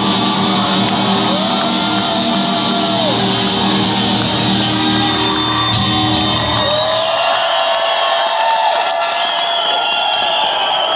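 Solo acoustic guitar's closing notes ringing out under a cheering, whooping audience with long whistles; the guitar dies away about two-thirds of the way through, leaving the crowd's cheers.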